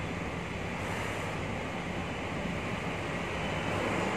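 Steady background noise with no distinct events, an even hiss of room tone.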